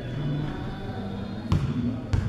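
A single sharp knock about one and a half seconds in, over a steady low background murmur of tones.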